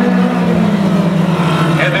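Focus midget race car engines running on track, their steady note slowly dropping in pitch as the cars go by.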